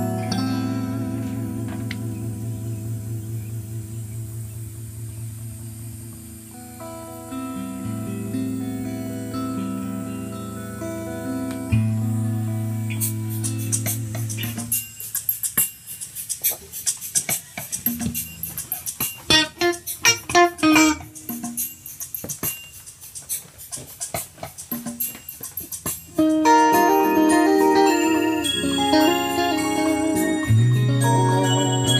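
Electric guitar played over a slow 6/8 backing track. For about the first half there are held chords over a steady bass, then sparse picked single notes, and a busier run of melodic notes comes in near the end.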